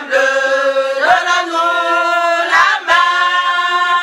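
A group of voices singing unaccompanied, holding long notes in harmony that change about every second, with no instruments or beat.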